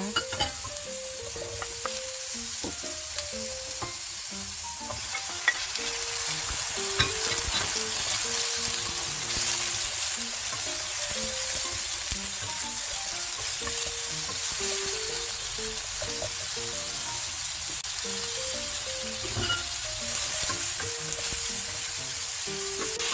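Sliced vegetables stir-frying in hot oil in a frying pan: a steady sizzle as a wooden spatula turns them, with a few light taps and scrapes against the pan.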